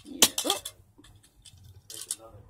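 A brief spoken word, then a few light clicks and taps of small die-cast toy cars being handled, with a couple near the start and more near the end.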